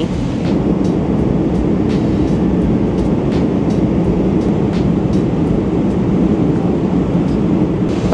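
Steady roar of a Boeing 777-300ER cabin in flight: engine and airflow noise heard from a business-class seat, with a few faint clicks.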